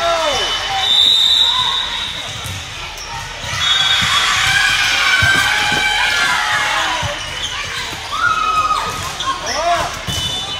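Busy volleyball gym sounds: sneakers squeaking on the hardwood floor and balls thudding and bouncing during a rally. A constant din of spectator and player voices echoes in the large hall.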